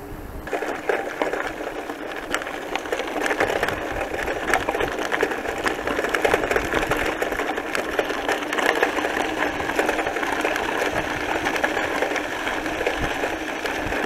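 Bicycle tyres rolling over a loose gravel track, with a constant fast rattle of small clicks from the stones and the bike shaking over the bumps. It begins about half a second in.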